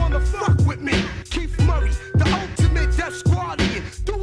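Hip hop track: a steady beat with a deep kick drum and bass and sharp drum hits, with a rapping voice over it.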